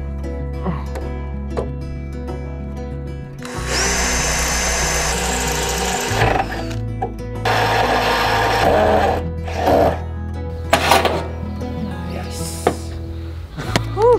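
Cordless drill driving screws into a roof edge in two bursts of a few seconds each, the first with a high whine that rises and then holds, over background music.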